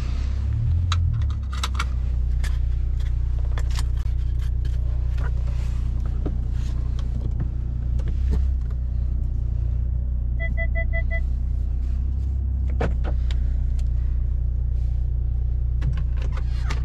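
Steady low drone of the engine and road heard inside the cabin of a Brabus-tuned Mercedes-Benz CLS while it is driven, with scattered light clicks and knocks. About ten seconds in there is a quick run of about five short electronic beeps.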